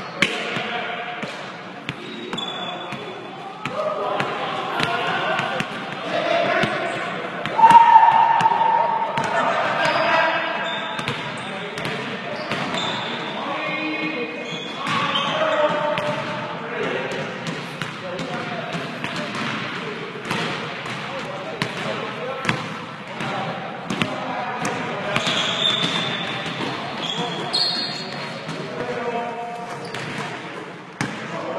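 Basketballs bouncing on a hardwood gym floor during a pickup game, with players' voices calling out across the court, all echoing in a large gym. The loudest sound is a loud pitched call about eight seconds in.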